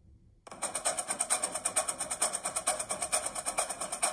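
A marching drumline playing a fast cadence of rapid, even drum strokes. It starts suddenly about half a second in.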